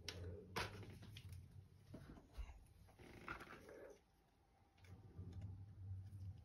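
Faint handling noises from gloved hands working plastic nursery pots and a plastic tray of ZZ leaf cuttings: a soft knock about half a second in, then light rustling and scuffing, over a low steady hum.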